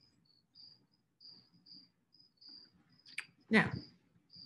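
Faint high-pitched insect chirping, a little over two chirps a second, with a spoken word near the end.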